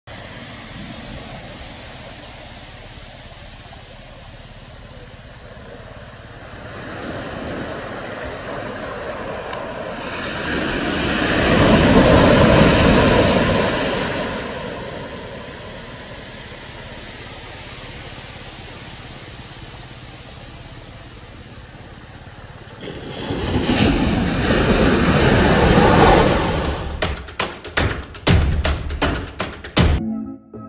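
Small waves breaking and washing up a sandy beach: a steady surf hiss that swells twice into louder waves, once about halfway through and again near the end.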